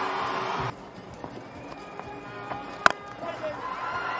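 Loud stadium noise cuts off abruptly under a second in, leaving quieter ground ambience with faint music. Near three seconds in comes a single sharp crack of a cricket bat striking the ball, lofting it into the air.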